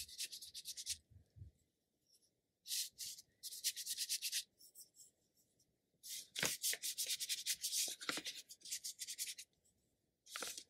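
Ink brush bristles dragged and scratched across paper in quick strokes, a dry rubbing hiss. It comes in groups: one at the start, two short ones around three seconds, a pause, then a longer run of strokes from about six to nine seconds.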